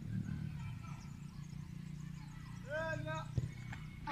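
A football kicked once, a single sharp thud about three and a half seconds in, just after a short shouted call, over a steady low rumble.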